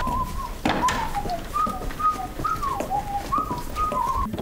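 A person whistling a tune in short notes, several of them sliding down in pitch.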